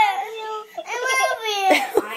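A young girl crying: two long, high wails that waver in pitch, then a short sob near the end.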